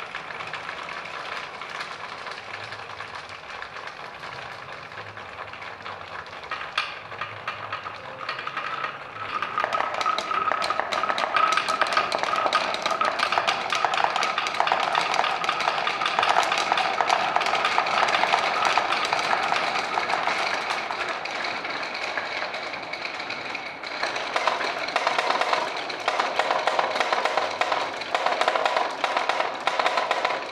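Many glass marbles rolling and clattering through plywood marble-run tracks, a dense rapid stream of clicks and knocks as they hit the wooden walls and each other. The clatter grows much louder and fuller about nine or ten seconds in as more marbles pour through.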